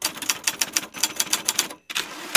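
Typewriter keys clacking in quick succession, about seven keystrokes a second, as a line of text is typed out. The run breaks off just before the end.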